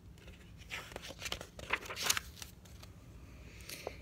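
A page of a picture book being turned by hand: a few quick paper rustles and swishes in the first half, with a short rustle near the end.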